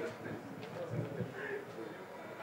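Faint voices talking off the microphone in a bar room between songs, with a low thump or two about a second in.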